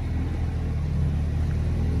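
A car engine idling, a steady low hum.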